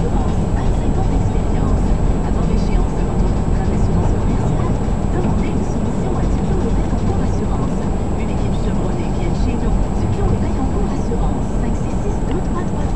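Steady low rumble of a car's engine and tyres on a snow-covered road, heard from inside the cabin while driving.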